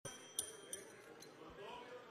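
Chrome desk bell on the chair's table struck three times, each a high metallic ping that rings on briefly, the first the loudest, over faint voices in the chamber. It is the presiding officer's bell, rung to call the session to order.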